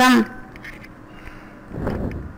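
A woman's narrating voice finishing a word, then a pause of faint background hiss with a soft, low thud near the end.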